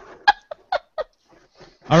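A woman laughing hard in a few short, sharp bursts about four a second, trailing off into faint breaths.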